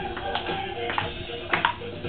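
Background music with a steady melody, and several sharp clicks of a ping-pong ball off the paddles and table during a rally.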